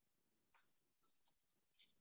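Faint scratching of a Prismacolor colored pencil on sketchbook paper, in a few short strokes.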